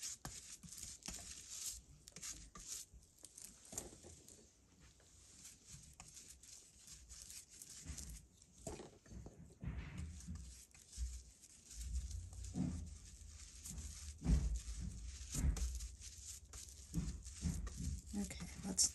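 A flat paintbrush stroking Mod Podge glue over crinkled tissue paper on a board: soft, irregular swishing and scratching strokes. About two-thirds of the way through, a low rumble with a few soft bumps comes in underneath.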